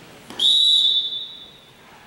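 Volleyball referee's whistle: one sharp blast a little over a second long, loud at first and then trailing off.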